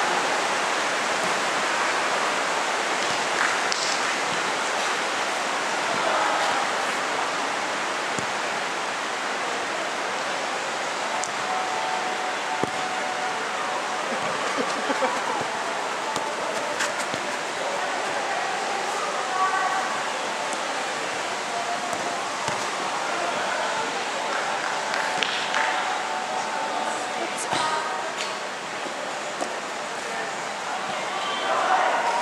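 Indoor football game: a steady rushing hall noise with players' voices calling out here and there, and a few short knocks of the ball being kicked.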